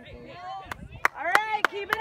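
Hand clapping close by, sharp single claps about three times a second starting under a second in, with voices shouting over them.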